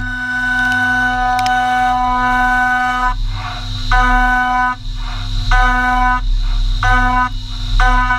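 Haas VF2 SS CNC mill roughing aluminum with a 1/2-inch three-flute carbide end mill at 15,000 rpm: a steady high-pitched cutting whine. The whine holds for about three seconds, then breaks off and comes back in shorter spells about every second and a half as the cutter goes into and out of the cut, with a hissing rush between.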